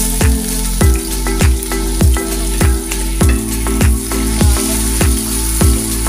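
Chopped onion dropped into a hot wok with sautéing garlic, sizzling and stirred with a wooden spatula; the sizzle starts right at the beginning. Background music with a steady beat plays throughout.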